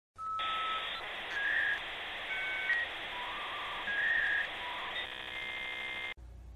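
Short electronic intro sting: a string of beeping tones jumping between pitches over a steady hiss, ending in a buzzy tone about five seconds in.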